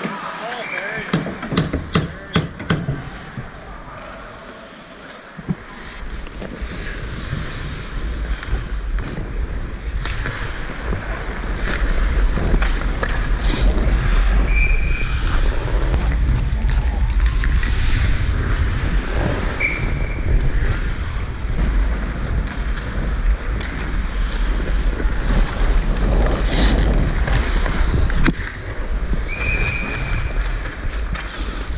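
Wind buffeting a helmet-mounted GoPro's microphone as a hockey player skates, a steady low rumble with skates scraping the ice. It begins about five seconds in, after a run of sharp knocks and clatter.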